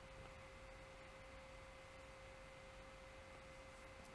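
Near silence: room tone with a faint steady high-pitched hum.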